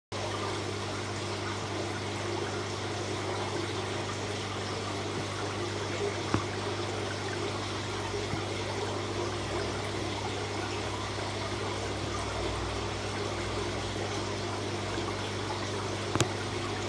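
Aquarium water trickling steadily, with a constant low hum underneath; one faint click about six seconds in.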